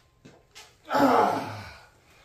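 A man's heavy, sighing exhale of effort about a second in, as he bends to set down a heavy rifle. It is preceded by a couple of faint knocks.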